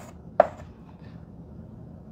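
A single sharp tap of chalk against a chalkboard about half a second in, then faint room tone.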